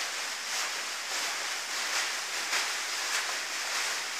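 Steady rustling and swishing of a costume's raffia strands and satin as the wearer moves in it.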